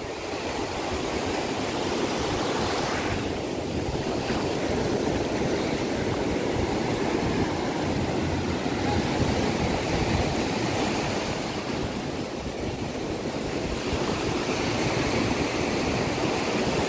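Ocean surf breaking and washing up a sandy beach: a steady rush of water that swells and eases slightly.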